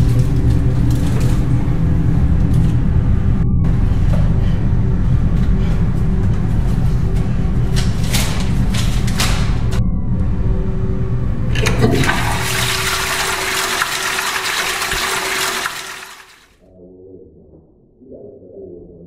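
A toilet flushing, water rushing under a low rumbling music bed; near the end it swells into a loud hiss and then cuts off abruptly.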